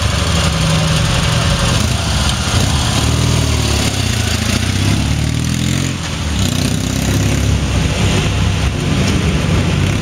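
Dnepr sidecar motorcycle's flat-twin engine revving, its pitch rising and falling a few seconds in, then pulling away over cobblestones.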